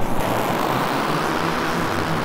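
A producer transition sound effect from a drill SFX pack: a steady, dense rushing noise with a low rumble underneath, coming in abruptly at the start.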